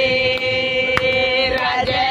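Women singing a Hindi devotional bhajan with no instruments. One long note is held for about a second and a half before the tune moves on, and a few hand claps keep time.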